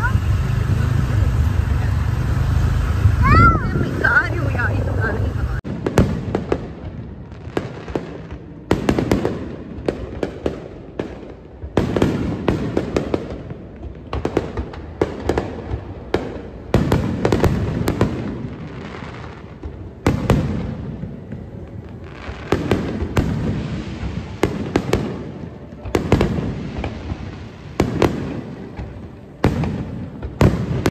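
A fireworks display: aerial shells bursting in a long run of bangs and crackles, some in quick clusters, with voices of onlookers underneath. For the first five or six seconds there is only the steady wind and engine noise of a moving scooter, which cuts off abruptly.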